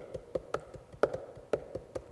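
Typing on a laptop keyboard: about ten quick, irregular keystrokes, the loudest about a second in.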